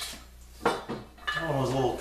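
Sharp metallic clinks of an aluminum extrusion being handled against an aluminum work-table top: one at the start and another about two-thirds of a second in.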